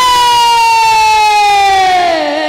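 A woman singing Bengali lila kirtan, holding one long loud note into the microphone, its pitch sliding slowly downward.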